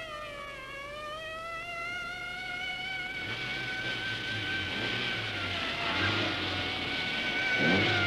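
A police car's siren wailing in a slow rise and fall while the car approaches, its engine and tyre noise growing louder from about three seconds in.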